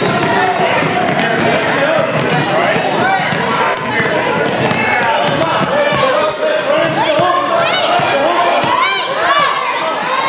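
A basketball being dribbled on a hardwood gym floor amid the chatter of children and spectators, with sneakers squeaking sharply several times near the end.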